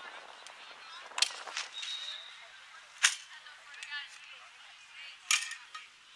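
A few sharp cracks: two close together about a second in, one near the middle, and another a little past five seconds, with faint distant voices between them.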